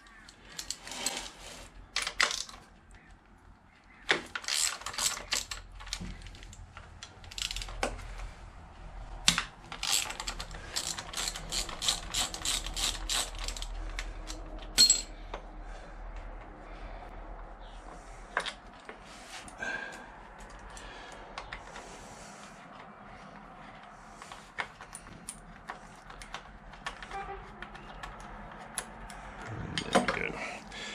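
A socket ratchet clicking in runs of quick, evenly spaced clicks as the bolts holding a motorcycle's rear-set bracket to the frame are undone, with handling knocks in between.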